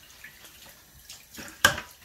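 Kitchen tap running in a thin stream into a stainless steel sink while a toheroa is rinsed and turned under it, with small handling clicks and one sharp knock about one and a half seconds in.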